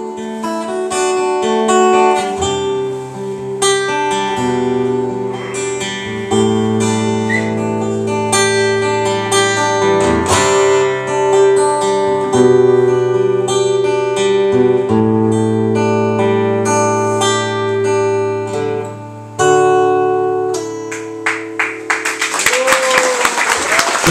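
Steel-string acoustic guitar strummed solo through an instrumental ending, chords changing every second or two. About 22 seconds in the playing stops and applause starts.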